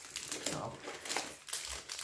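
Crinkling and rustling of a crumpled chocolate-brownie wrapper as it is pulled out of a bag and unfolded in the hands, a run of small irregular crackles.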